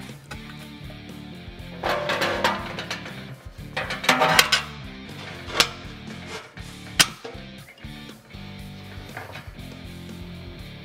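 Background music over metal handling sounds of an aluminum top plate being fitted down into an aluminum tank: a scraping stretch about two seconds in, a cluster of knocks around four seconds, and two sharp clicks about a second and a half apart past the middle.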